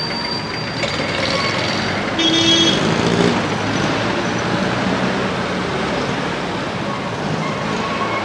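Traffic on a busy city street, cars and trucks passing steadily, with a short horn toot about two seconds in.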